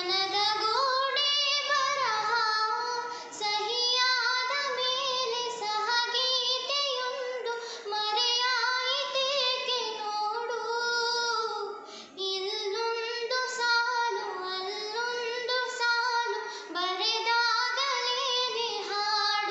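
A young girl singing a Kannada song solo with no accompaniment: one clear voice in long, melismatic phrases, broken by short pauses for breath.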